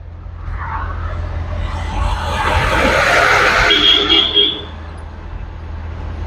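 A road vehicle passing by: its tyre and engine noise swells over about three seconds, then fades, over a steady low rumble.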